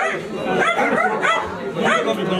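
Several people talking loudly over one another in Nepali, a crowd arguing in a confrontation.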